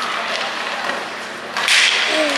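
Ice-hockey play on a rink: a steady wash of arena noise with skates and sticks on the ice, and about one and a half seconds in a short, loud scraping hiss.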